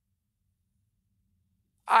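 Near silence, then a man starts speaking just before the end.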